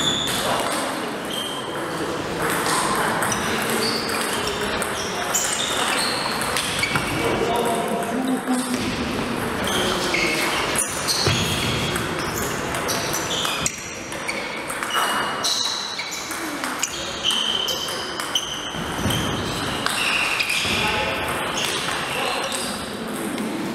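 Table tennis ball being hit back and forth in rallies: short pinging knocks of the celluloid ball off the rubber bats and the table, with voices in the hall behind.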